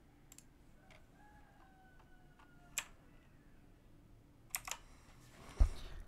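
Scattered sharp computer clicks and key taps over quiet room tone, with a heavier thump near the end. A faint held tone sounds from about a second in until nearly three seconds.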